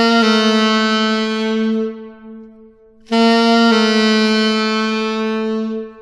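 Tenor saxophone playing a descending half-step approach twice: a short tongued upper note (written C) slurred down to a long held target note (written B), the target fingered with the middle side key.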